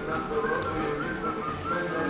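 Music with a high, whistle-like melody over lower held notes, several pitched lines sounding together with short glides between notes.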